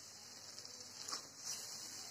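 Faint steady hiss of a yogurt fish curry simmering in a kadai, with a couple of soft clicks past the middle.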